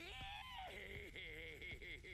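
Faint voice of an animated character from the episode's playback, laughing and shouting in a wavering pitch.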